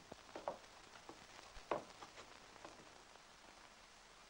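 A few faint short knocks, the clearest near the middle, dying away into a steady hiss.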